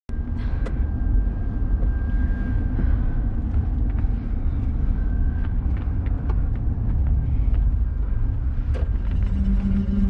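Steady low rumble of a car driving, its engine and road noise heard from inside the cabin, with a few faint clicks.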